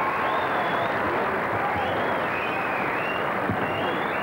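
A concert audience applauding and cheering, steady dense clapping with high cheers rising and falling over it.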